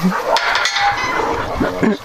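A sharp metal clank about a third of a second in, then the clatter of a wire-mesh gate and fence, with dogs whining at it.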